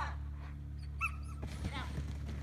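A dog giving about three short, high-pitched yips or barks while running an agility course, over a steady low hum.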